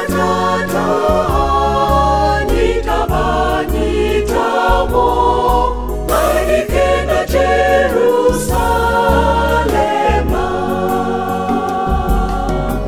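A church choir singing a gospel song in several voice parts, over sustained low bass notes that change pitch every second or so.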